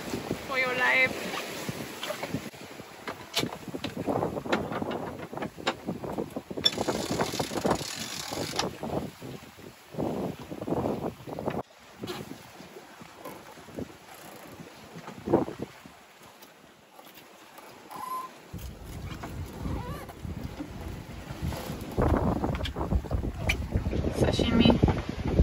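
Wind buffeting the microphone on a sailboat under way at sea, with water noise and scattered knocks and handling sounds; the low wind rumble is strongest in the last few seconds.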